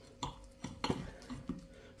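Knife and fork cutting through a pie's pastry crust against a ceramic plate, making a few light clicks and taps.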